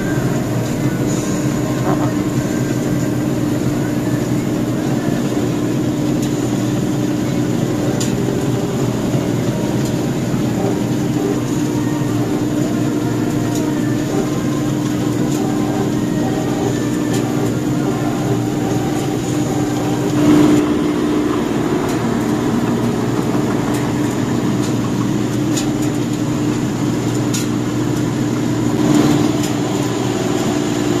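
Diesel engine of a rice combine harvester running at a steady drone, with two brief louder swells about twenty and twenty-nine seconds in.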